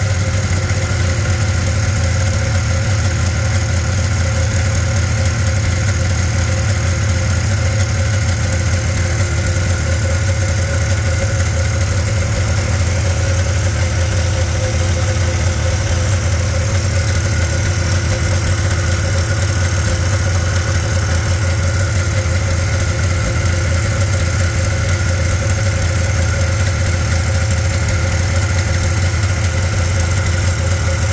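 Polaris XLT three-cylinder two-stroke snowmobile engine idling steadily while warm, its three carburetors being synchronized.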